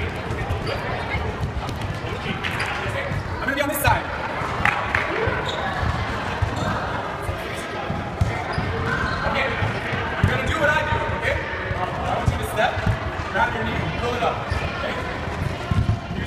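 Voices talking in a large gym hall over many short, repeated thuds on the wooden floor.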